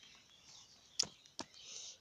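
Faint outdoor background hiss with two sharp clicks about a second in, less than half a second apart.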